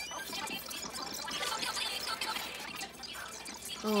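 A song recording on a handheld camera being fast-forwarded: a short rising sweep, then a rapid, jumbled chatter of sped-up playback.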